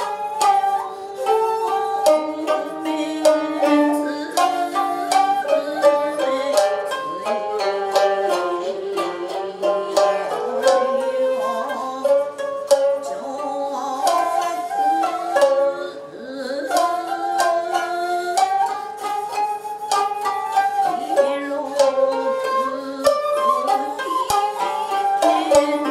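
Japanese sankyoku ensemble playing: koto and shamisen plucking quick notes against long held notes from a shakuhachi bamboo flute.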